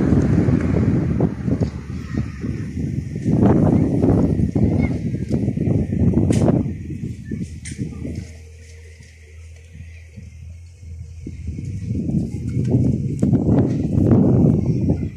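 Wind buffeting the microphone: a gusty low rumble with crackles that dies down for a few seconds in the middle, leaving a faint steady hum, then gusts up again.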